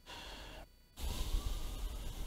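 A person's short intake of breath, then after a brief pause a longer breath out.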